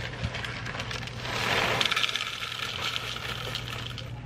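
Dry Lucky Charms cereal poured from its bag into an empty plastic bowl: a continuous rush of many small pieces hitting the bowl, heaviest in the middle of the pour.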